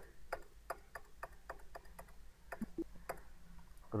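Faint, sharp ticking clicks, roughly three a second and not quite even.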